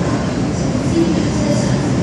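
MTR M-Train electric multiple unit pulling out of an underground platform, its motors and wheels making a steady, continuous running noise as it starts to gather speed behind the platform screen doors.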